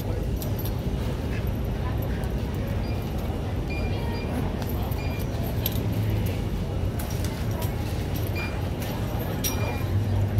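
Backpack being handled and closed up: scattered small clicks and clinks of buckles, zipper pulls and straps, over a steady low hum and faint background voices.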